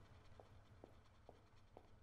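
Near silence: a faint low hum with soft ticks about twice a second.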